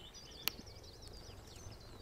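Faint birdsong: a small songbird's quick, high twittering, with a single sharp click about half a second in.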